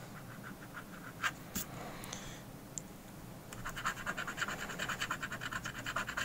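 A coin scratching the silver coating off a paper scratch-off lottery ticket: a couple of light ticks, then from about halfway in a quick run of rapid back-and-forth scraping strokes.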